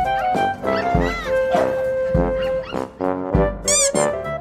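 Upbeat background music with a bass line and a horn-like melody over a steady beat. Short high arching calls sound about a second in and again near the end, the second one higher and brighter.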